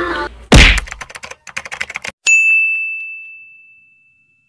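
Sound effects: a heavy thump about half a second in, then a quick run of typewriter key clicks, about ten a second, ending in a single typewriter bell ding that rings out and fades over nearly two seconds.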